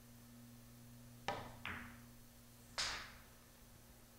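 Pool shot: the cue tip strikes the cue ball about a second in, hit with a lot of side spin, and the cue ball clicks into an object ball a moment later. A second sharp knock of the rolling ball follows about a second after that.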